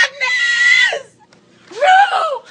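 A woman screaming: one high-pitched scream held steady for about a second. Near the end comes a second loud yell that rises and then falls in pitch.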